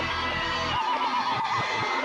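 Animated logo jingle music, with a wavering, warbling high tone a little under a second in.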